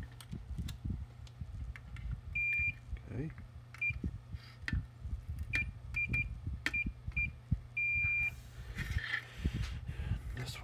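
Multimeter continuity tester beeping as test probes are touched to points on a circuit board, the beep sounding each time the probes find a closed connection. A series of short, irregularly spaced single-pitch beeps, the last held longer, with light clicks of the probe tips.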